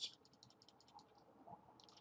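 Near silence, with a few faint clicks of a computer mouse.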